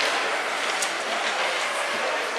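Indoor ice rink sound: a steady noisy hiss of several players' skate blades gliding and scraping on the ice, with a faint sharp tick near the middle of a stick or puck.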